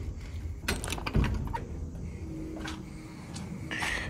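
Clicks, knocks and rattles of a realtor's lockbox being unlatched and its metal shackle slipped off a door knob, the strongest a knock just over a second in.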